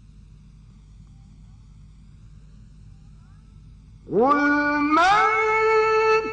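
A faint low hum, then about four seconds in a male Quran reciter's voice begins a chanted phrase. It glides sharply up into a long held note, steps higher about a second later and holds again.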